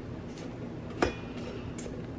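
A spatula scraping around the inside of a stainless steel mixing bowl, with one sharp metallic clink about a second in that rings briefly, over a steady low hum.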